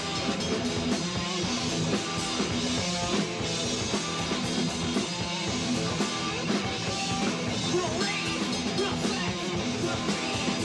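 Punk rock band playing live: electric guitars over a drum kit, one continuous loud passage.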